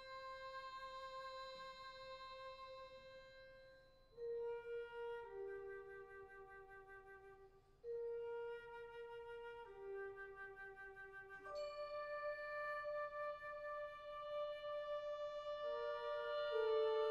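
High school wind ensemble playing a slow, soft passage led by flutes: long held notes that move to a new pitch every few seconds, growing louder toward the end.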